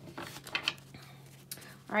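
A few soft taps and clicks of tarot cards being handled against a wooden table, mostly in the first second or so.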